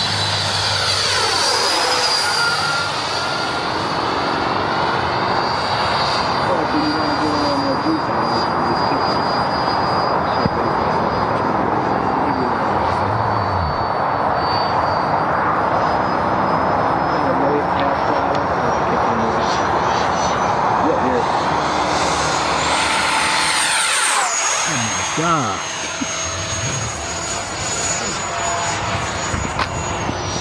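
Electric ducted fan RC jet, a 90 mm Schübeler fan with an inrunner motor on a 12-cell pack, flying: a steady high-pitched fan whine over a rush of air. About 23 seconds in the whine climbs in pitch and then drops sharply.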